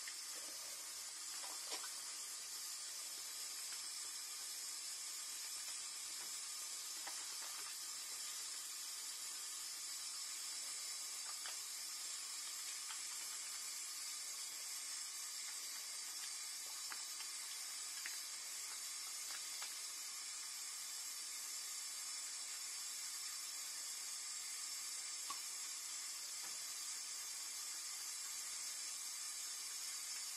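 Bathroom faucet running steadily into a sink, a steady hiss of falling water, with a few faint clicks and splashes as soapy hands are rubbed together under the stream.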